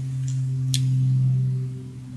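Airplane passing overhead: a low, steady drone that swells slightly and eases off near the end. A brief click about a second in.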